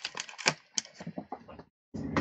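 Clear plastic stamp case and a sheet of clear stamps being handled: a quick, irregular run of plastic clicks and rattles that stops shortly before the end.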